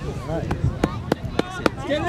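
Five sharp snaps about a third of a second apart over background voices, with a shouted call starting at the very end.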